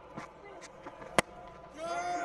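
Cricket bat striking the ball once, a single sharp crack about a second in, as the batter skies the ball into the air. Crowd noise swells just before the end.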